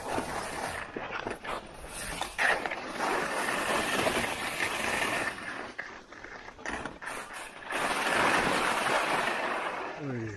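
Skis scraping and carving on firm groomed snow, a rough hiss that rises and falls in long surges.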